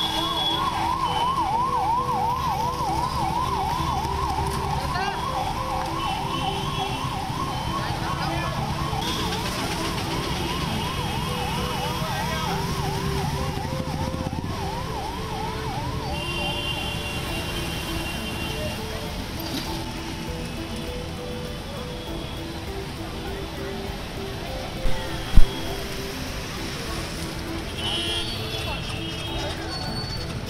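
Emergency-vehicle siren wailing up and down about twice a second, fading out about halfway through, over steady road-traffic noise with car horns sounding now and then. A single sharp knock near the end is the loudest sound.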